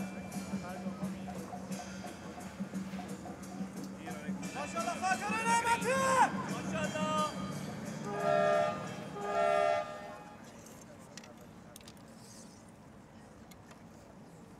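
Spectators murmuring, then calling out about five seconds in, followed by two short blasts of the range's signal horn, each under a second, about a second apart. In target archery two blasts call the archers up to the shooting line before shooting starts.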